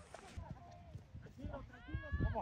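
Distant shouts and calls of soccer players across the field, louder near the end, with a few low thuds.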